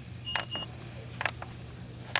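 A short, high electronic beep in two brief pieces near the start, with a few light clicks and taps, likely a plastic LEGO minifigure being moved by hand across a tabletop.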